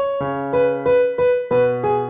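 Piano playing a slow melody of repeated single notes, about three a second, each note struck several times before the line steps down, over held bass notes.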